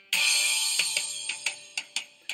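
Backing tempo track of drum-kit music playing under a rhythm drill: a loud crash just after the start fades away, followed by a run of short, light beats.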